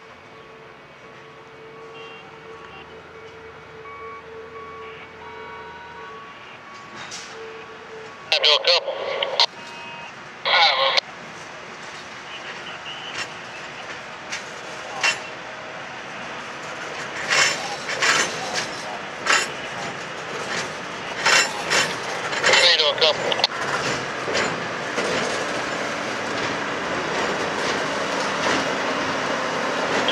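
Railroad gondola cars rolling slowly on yard track, pushed by a Brandt hi-rail truck. A faint steady wheel squeal comes first, then two short loud bursts about eight and ten seconds in. After that come a run of sharp clicks and clanks from the wheels and couplings, over rising rolling noise as the truck's engine draws near.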